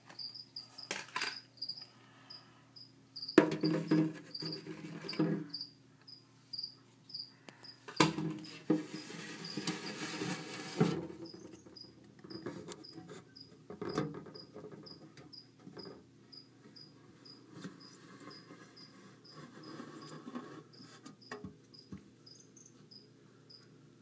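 A cricket chirping in a steady, regular rhythm, a few chirps a second. Over it come knocks and rubbing from plastic containers being handled, loudest about three seconds in and again from eight to eleven seconds.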